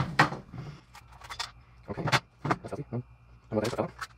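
Plastic Ridgid 18V battery pack housings being pulled apart and the shells set down on a wooden table: a run of short clicks and knocks, the loudest right at the start.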